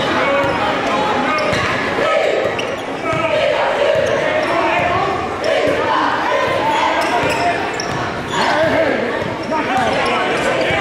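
A basketball being dribbled on a hardwood gym floor, with crowd voices and shouts echoing through the large gym.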